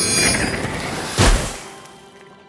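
Cartoon transition sound effect: a rushing whoosh, a low thump about a second in, then a fade-out.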